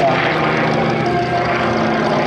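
The twin Pratt & Whitney R-1830 radial piston engines of a PBY Catalina flying boat running as it taxis, a steady propeller drone.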